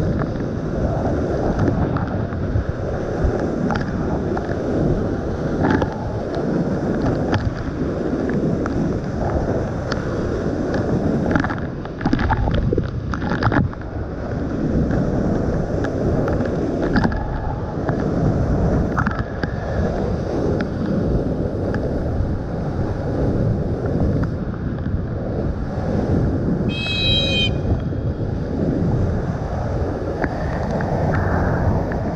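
Large waterfall pouring and crashing at close range: a loud, steady rush that swells and dips as spray and wind buffet the microphone. A brief high squeak sounds about three seconds before the end.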